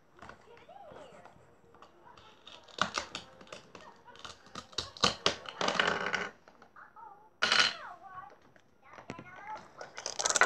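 Plastic toy fruit and vegetables being cut apart with a plastic toy knife on a plastic cutting board: quiet scraping, then a quick run of clicks and taps, and a short rasp near the middle. A faint voice is heard now and then.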